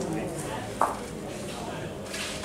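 Bocce balls knocking together once, a short sharp clack about 0.8 s in, as a rolling ball strikes the balls gathered around the jack on the court's carpet. Players' voices murmur underneath.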